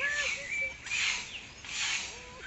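Footsteps crunching on a gravel path, a rasping scrape about once a second, with faint short squeaky calls between them.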